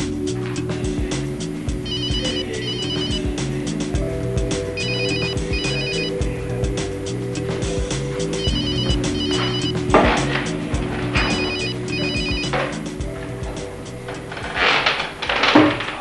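A telephone ringing in pairs of short electronic trills, four double rings about three seconds apart: an incoming call, answered just after the last ring. Background music with a steady beat plays throughout, and a few louder noises come near the end.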